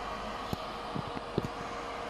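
Steady whir of a mining rig's cooling fans and its Bitmain APW7 1800 W power supply, modified with one large fan to run quietly. A faint steady tone runs through it, with a few light clicks.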